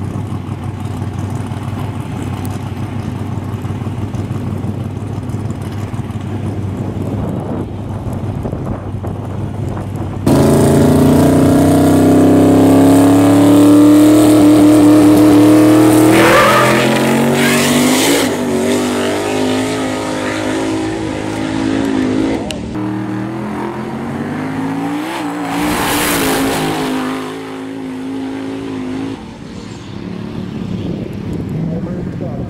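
Boosted Mustang drag car's engine running at the line for about ten seconds, then suddenly much louder, its pitch slowly climbing. Around sixteen seconds in it rises sharply as the car launches on a full-throttle pass, and the sound falls away as the car heads down the track.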